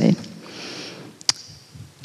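A faint breath drawn in close to a handheld microphone in a pause between words, followed about a second later by a single short click.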